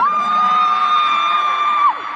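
A fan in the crowd screaming: one long, loud, high-pitched scream that swoops up, holds steady, and drops off near the end. It rides over general crowd cheering at an awards show.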